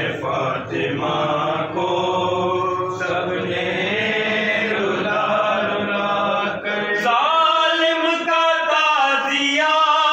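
Several men's voices chanting together, dense and overlapping; about seven seconds in a clearer single melodic male voice takes over, singing a lament-like line.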